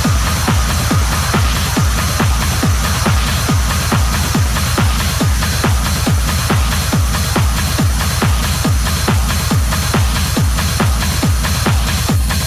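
Techno DJ mix played from vinyl turntables: a steady kick drum beat about twice a second with hi-hat percussion above it.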